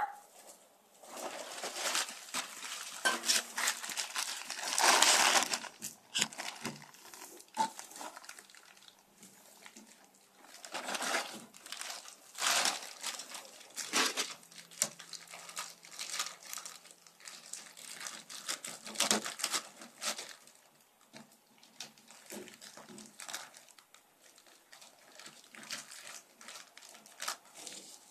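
A plastic bag and loose polystyrene foam beads crinkling and rustling as they are handled, in irregular bursts with short pauses.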